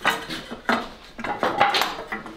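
Metal clanking and clinking as a motorcycle's exhaust header pipe and its heat shield are worked loose and pulled from the engine: several sharp knocks, the loudest one about three-quarters of the way through.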